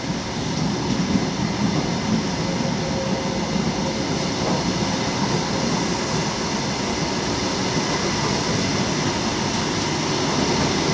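Greater Anglia intercity passenger coaches rolling slowly past at close range as the train pulls out of the station: a steady rumble of wheels on the rails that rises a little in the first second and then holds.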